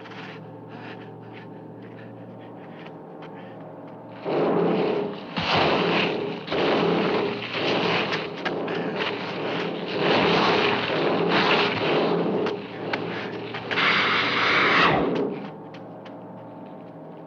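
Film monster sound effect for a giant lizard: a run of loud, harsh, rasping roars about a second long each, starting about four seconds in and ending near the end, after a quieter stretch with faint taps and a low hum.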